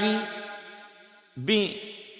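A man's voice holding a chanted note at a steady pitch that fades out over about a second, then a short sung syllable that also dies away.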